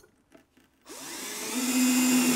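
Drill/driver driving a screw into a drawer slide's rear mounting bracket: about a second in, the motor starts with a rising whine that grows louder and then holds steady.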